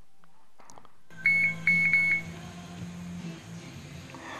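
Drift Ghost XL helmet action camera beeping as it is switched off: a faint button click, then about a second in a quick run of short, high-pitched electronic beeps. A low steady hum lies underneath.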